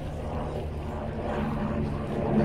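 Helicopter flying overhead: a steady low drone of engine and rotor with a few held low tones.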